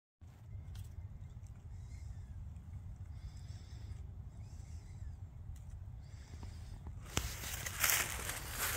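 A low steady rumble outdoors in the woods. About seven seconds in, footsteps crunching through dry fallen leaves start and get louder.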